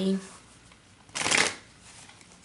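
A tarot deck being shuffled by hand, heard as one brief burst of card noise about a second in.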